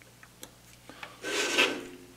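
An aluminium FEP frame and its small screws being handled on a cutting mat: a few light clicks in the first second, then a short rubbing sound lasting about half a second as the frame is moved and a hex key is set into a corner screw.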